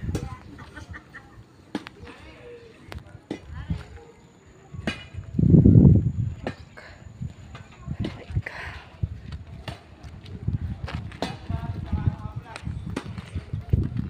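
Wind buffeting a phone's microphone in gusts, the strongest a low rumble about five to six seconds in, with scattered clicks and faint voices of people nearby.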